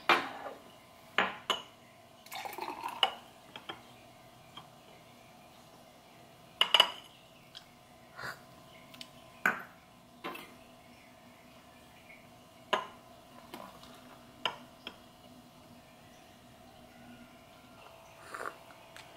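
Small glass espresso cups and a tall drinking glass clinking and knocking against each other and the granite countertop, a dozen or so sharp knocks spaced a second or more apart. A faint steady hum runs underneath.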